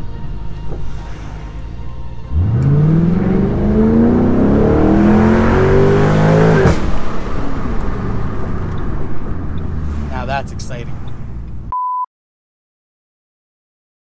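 A 2006 Mustang GT's 4.6-litre V8, heard from inside the cabin, running steadily, then revving up under acceleration from about two seconds in, rising in pitch until it drops off suddenly midway. It settles back to a steady drone, followed by a short beep and then silence near the end.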